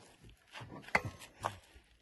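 A few short creaks and knocks from a caravan's corner steady being wound by its hand crank, working stiffly under load.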